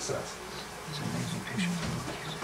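Low, quiet murmured male voices away from the microphone, with a short spoken "So" at the start.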